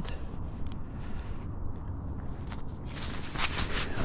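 Jacket fabric rustling and rubbing over the microphone as glasses are tucked into a pocket, a quick run of scratchy brushes in the second half, over a low steady rumble.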